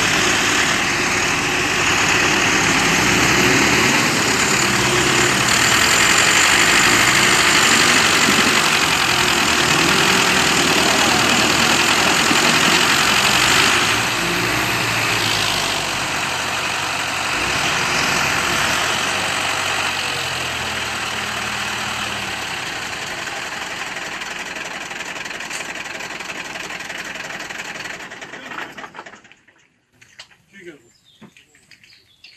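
A farm tractor's diesel engine and a milk truck's engine running hard as the tractor tries to tow the truck out of deep mud. The engine noise is loudest in the first half, drops a step about halfway through, and fades out near the end.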